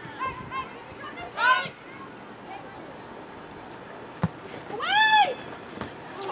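Players' voices calling out across a soccer pitch, with one loud, high-pitched shout about five seconds in. A single sharp knock is heard a little before it.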